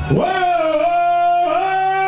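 A single voice singing a sustained "oh" call in long held notes. It slides up at the start, dips slightly, then steps up about a second and a half in, in the manner of a rock sing-along chant.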